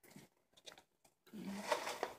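Bearded dragon crunching a dubia roach: a couple of short crunchy bites, then a louder run of crunching near the end.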